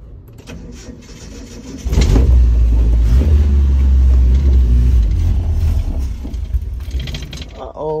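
Starter cranking the stalled 1985 Nissan 720 pickup's engine, which does not catch: a loud low rumble starts suddenly about two seconds in, holds for about three seconds, then dies away. The owner is not sure whether the stall comes from a grounding issue or a charging issue.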